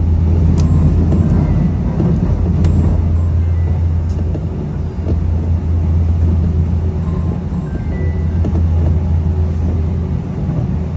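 Steady low rumble of a moving electric train heard from inside the passenger car, with a few faint clicks, under background music.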